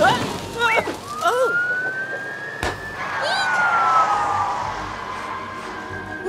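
Cartoon fire engine siren wailing: a single slow rise in pitch over about two seconds, then a slower fall. A brief sharp hit cuts in near the top of the rise.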